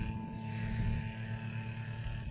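A steady background hum made of several held tones, unchanging throughout, with no other distinct event.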